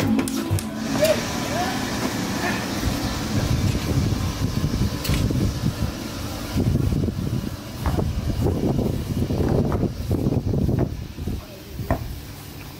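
Indistinct voices talking over a steady background noise, the talk busiest in the second half.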